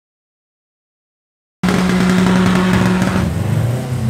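Drag racing car engines, a turbocharged Subaru Impreza WRX 2.0 and a Volkswagen Golf 1.9 TDI, cutting in suddenly about a second and a half in. They run loud at a steady high rev, then drop in pitch about three seconds in.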